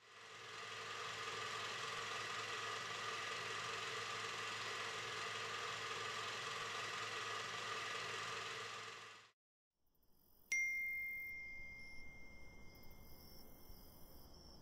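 A steady noise with a few held tones under it fades in, runs about nine seconds and cuts off suddenly. A moment later a phone's notification chime gives a single bright ding that rings on and slowly fades.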